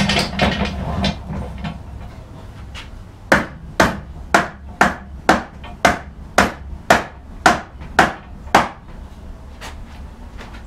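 Mallet blows on a joined wooden frame: a steady run of about eleven sharp knocks, roughly two a second, driving the joints of a dry test assembly closed. They are preceded by a second or so of clattering as the parts are handled.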